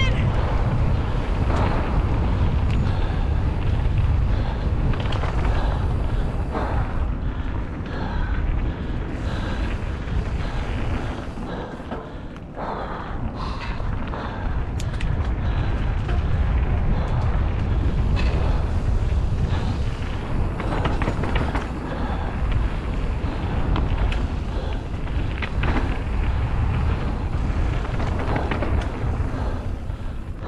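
Wind buffeting an action camera's microphone on a mountain bike descending a dirt trail, with tyres rolling over the dirt and scattered knocks and rattles from the bike over bumps. It eases briefly about twelve seconds in.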